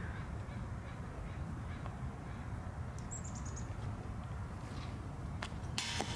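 Outdoor ambience with a steady low rumble and a bird calling faintly, including a quick high chirping trill about three seconds in. A short sharp knock sounds near the end.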